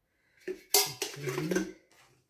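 Metal spoon clinking several times against a mug and tin, in quick sharp knocks.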